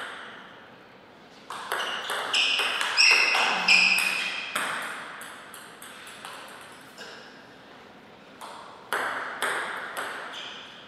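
Table tennis ball in a rally, clicking off the rackets and the table in quick succession, each hit with a short ringing ping, for about three seconds. A few more separate bounces come near the end.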